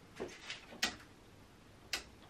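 Faint, unevenly spaced clicks from a 1975 Mini Clubman's indicator circuit, the flasher unit and indicator switch: three quick clicks, then one more near the end. The rear indicators are faulty, and the owner calls one side's flashing freaking bonkers.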